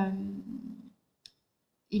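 A woman's drawn-out hesitation 'euh' at a steady pitch, held for about a second. A single short, sharp click follows a little past the middle, and she starts speaking again near the end.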